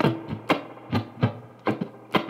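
Electric guitar played with a clean tone: five or six sharp, percussive strums, each chord ringing briefly and decaying, about two a second. The right hand works as a percussion instrument in a blues rhythm.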